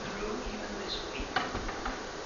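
Steady buzzing hum under faint room noise, with a single sharp click about one and a half seconds in.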